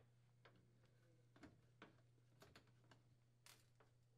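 Near silence: a low steady hum with a few faint, irregular ticks from a hand screwdriver driving screws into the oven's sheet-metal bottom vent.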